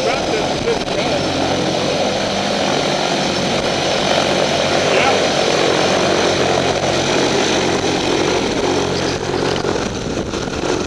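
Propeller aircraft engine running steadily on the ground, a continuous loud drone with hiss.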